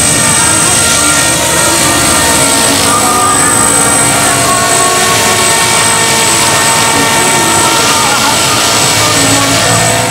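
Electric 450-size RC helicopter with an MD500 scale body flying low and close: a steady motor whine and rotor hum made of several held tones, with one very high thin tone, unbroken throughout.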